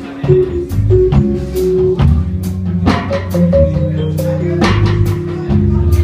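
Jazz-fusion band playing live: a drum kit keeps time with cymbal and drum strokes over an electric bass line, with held notes sustained above.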